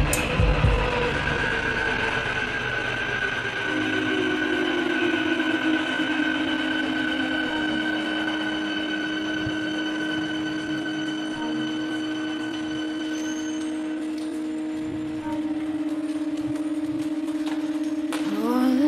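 Electronic music of held synthesizer tones with no beat: a deep low part drops out in the first second, leaving long sustained chords that shift about four seconds in and again near the end.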